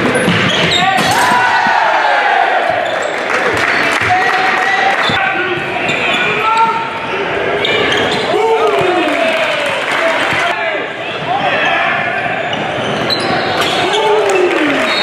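Basketball game sound in a large gym: a ball dribbling and bouncing on a hardwood court, with players and spectators calling out over the echoing hall.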